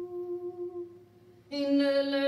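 A voice holding one long, steady hummed note that fades away about a second in; after a short hush, a louder, brighter held note comes in about one and a half seconds in as the music resumes.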